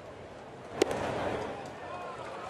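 A 92 mph fastball pops into the catcher's mitt with one sharp crack about a second in, over ballpark crowd noise that grows louder after the catch.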